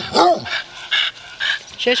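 Basset hound giving two short barks at the start, each rising and falling in pitch, followed by fainter scattered sounds.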